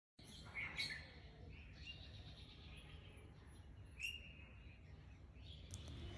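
Faint bird chirps, heard twice: once near the start and again about four seconds in, over a quiet low hum.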